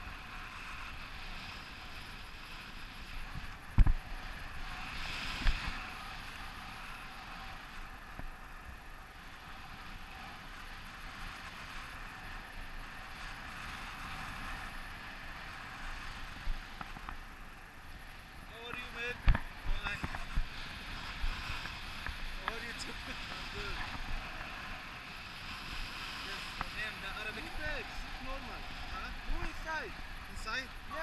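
Steady rush of air over the microphone of an action camera on a selfie stick, carried in flight under a tandem paraglider. A few sharp knocks stand out, the loudest about four seconds in and another just past the middle.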